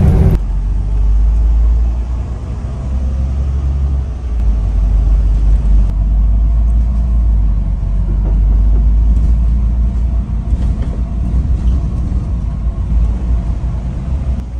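Low, steady rumble of a double-decker bus's engine and running gear, heard from inside the moving bus.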